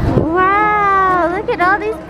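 A toddler's high-pitched wordless vocalising: one long drawn-out call, then a few short, quick rising squeals near the end.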